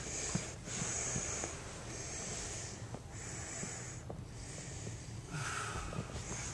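A man breathing hard in rhythmic, hissing breaths, about one a second, from the effort of holding a back bridge.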